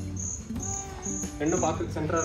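Cricket chirping: a short, high, even chirp repeated about two and a half times a second, with a voice speaking briefly near the end.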